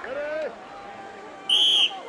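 Referee's whistle, one loud high-pitched blast of under half a second near the end, signalling the start of a strongman loading-race heat.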